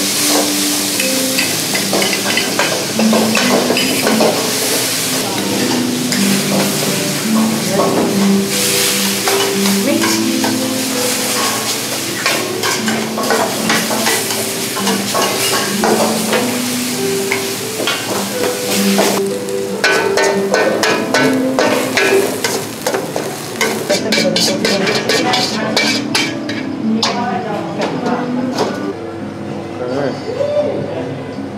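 Chopped chicken sizzling in a hot wok while a metal spatula stirs and scrapes it against the pan, with repeated clattering strokes. Light background music plays underneath.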